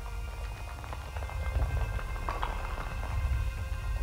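Film soundtrack from an animated feature: held score notes over a low rumble, with many small sharp cracking clicks as cracks spread through tile and plaster.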